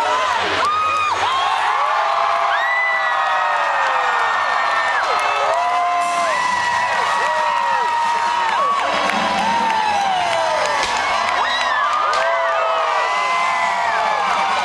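A large outdoor crowd cheering, whooping and screaming, many voices at once without a break, as the big Christmas tree lights up.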